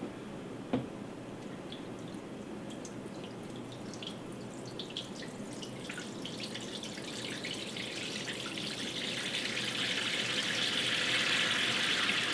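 Water poured from a plastic jug into a perforated rainmaker tray, dripping through its holes as simulated rain onto a floodplain model; the dripping grows steadily louder. A single knock about a second in.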